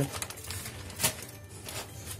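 Plastic bag rustling faintly as it is lifted away from a wooden cutting board, with a single sharp tap about a second in, over a low steady hum.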